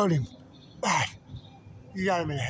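A person clears their throat once about a second in, a short harsh burst, after a brief voiced syllable at the start.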